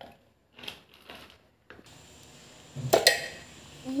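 Soft knocks of cucumber pieces going into a stainless-steel mixer-grinder jar, then a sharp metallic clank about three seconds in that rings briefly.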